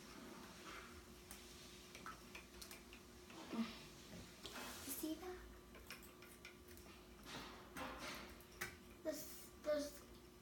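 Quiet room with scattered faint clicks and rustles of hands handling small plastic slime-kit containers, and a few soft murmured sounds from a child.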